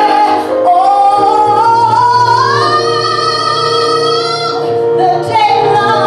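A woman singing a gospel solo into a microphone. Her voice slides upward to a long held high note, breaks off briefly about five seconds in, then starts the next phrase.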